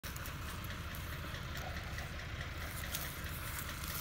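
A steady low rumble with an even hiss and a few faint light crackles.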